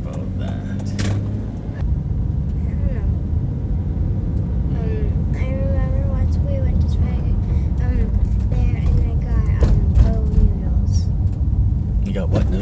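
Steady road and engine rumble inside a moving car's cabin, growing louder about two seconds in.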